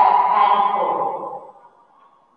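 A woman's voice in long, drawn-out tones, like slow sing-song dictation, breaking off about one and a half seconds in.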